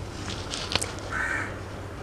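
A crow caws once, about a second in, over a steady low hum. A few short rustles and a click come from hands working the hair just before it.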